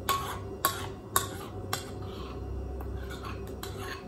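Metal spoon clinking and scraping against a ceramic bowl while scooping out thick beetroot puree: about four sharp clicks in the first two seconds, then a few fainter ones.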